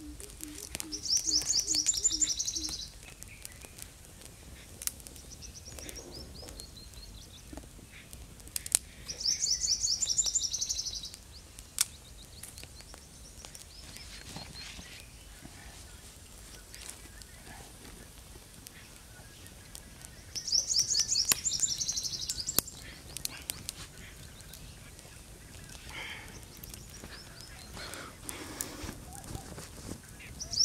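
A bird singing a fast, high trill that drops in pitch at its close. It sings three bouts of about two seconds, at the start, around nine seconds in and around twenty seconds in, with softer short phrases between. A low, rapidly pulsing call sounds in the first two seconds, and faint scattered clicks are heard throughout.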